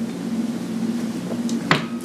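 A man takes a sip of beer from a stemmed glass over a steady low background hum. There is one short, sharp click near the end.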